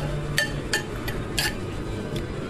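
A spoon clinking and knocking against a baking dish of spaghetti, several short sharp clinks about every half second.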